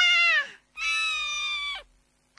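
Cat meowing twice: a short meow falling in pitch, then a longer, nearly level meow.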